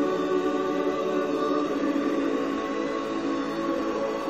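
Choral music: a choir of voices holding long, slow chords.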